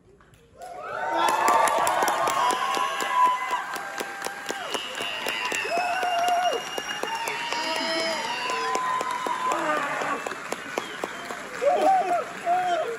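Theatre audience clapping and cheering with shouts, breaking out about half a second in after a brief hush at the end of a song.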